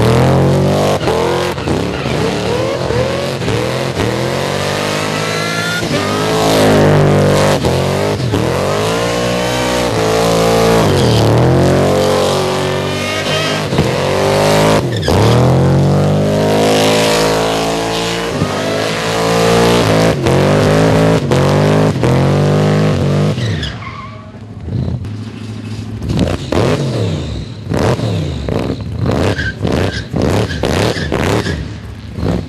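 Holden VX Commodore burnout car with a 406 cubic inch Chevrolet V8, revving hard with its engine note rising and falling again and again while the spinning rear tyres screech. About six seconds before the end the revs drop away and the sound gets quieter, broken by sharp cracks and shorter bursts of revving.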